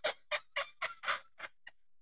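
A man's breathless, staccato laughter: rapid short pulses, about six a second, thinning out toward the end.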